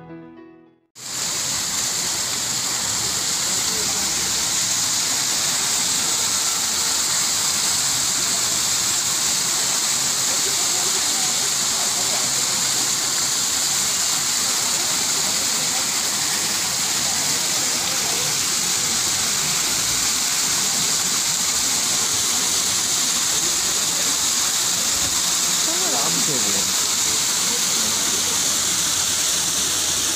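Small waterfall splashing over rocks into a shallow pool, a steady rushing that sets in when piano music cuts off about a second in.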